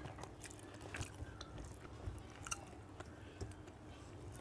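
Faint close-up chewing of chicken curry and rice, with irregular soft clicks and squishes of fingers mixing rice on a steel plate. A few clicks stand out, about a second in and halfway through.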